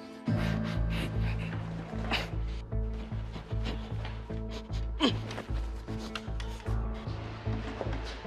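Tense background score: a held chord gives way, a moment in, to a pulsing low bass beat about twice a second with sharp percussive hits over it.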